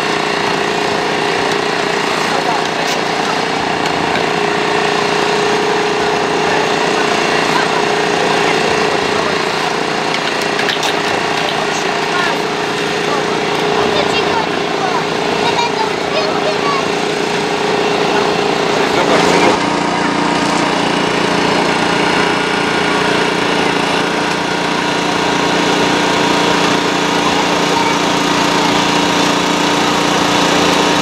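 Small petrol engine of a firefighters' hydraulic rescue-tool power unit running steadily while a spreader/cutter works on a car door. About two-thirds through there is a short loud crack, and the engine note drops to a lower pitch.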